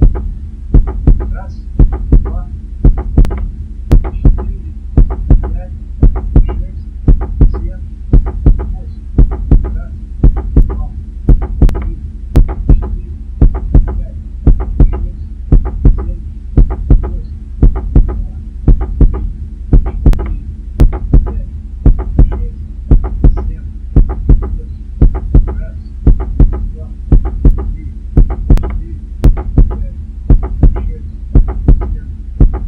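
Recorded heartbeat, a steady lub-dub double beat repeating about once a second over a low steady hum. Each pair of sounds is the heart's valves closing.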